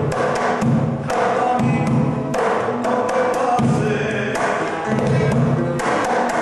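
Afro-Peruvian lando rhythm played on a cajón and acoustic guitar: the cajón's deep bass strokes and sharp slaps under the guitar's picked notes and chords.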